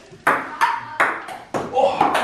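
Table-tennis ball being played back and forth in a rally: a quick run of sharp clicks as the ball strikes the paddles and the table, about four or five hits in two seconds.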